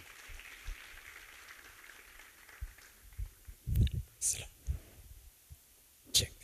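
Faint applause for the first two seconds or so, then a few dull thumps with a little hiss about four seconds in.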